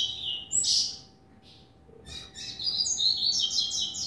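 Caged double-collared seedeater (coleiro) singing a rapid run of clipped, high notes. A phrase ends just after the start and a short burst follows about half a second in. After a pause of about a second, a longer, denser run fills the last two seconds.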